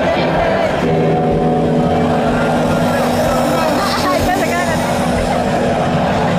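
Live rock concert sound: a loud, steady droning chord of several held tones comes in about a second in over the noise of the crowd's voices and shouts.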